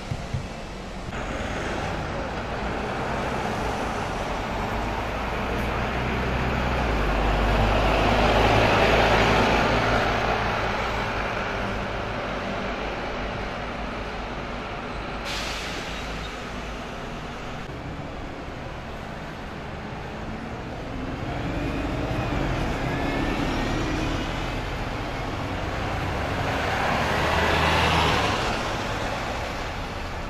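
Diesel buses and traffic passing close on a city street, with the sound swelling twice as vehicles go by, once about a third of the way in and again near the end as a double-decker bus pulls up close. About halfway through there is a short hiss of air from an air brake, and later a rising whine.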